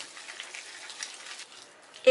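Thick chickpea-flour batter with chopped fenugreek leaves being beaten by hand in one direction to work air in, giving a faint, wet crackle and squelch.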